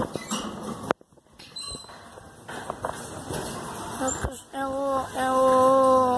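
A gate being opened: a sharp knock about a second in, then the hinges give a loud, steady squeal in two pulls near the end.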